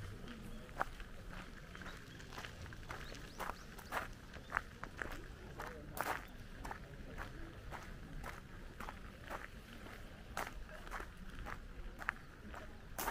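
Footsteps crunching on a gravel path at a steady walking pace.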